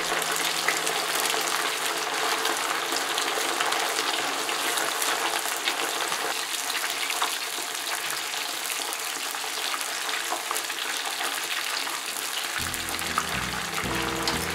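Marinated beef slices deep-frying in hot oil at about 180 °C, a steady, dense sizzle scattered with small crackles.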